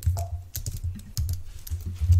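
Rapid typing on a computer keyboard, a quick irregular run of key clicks.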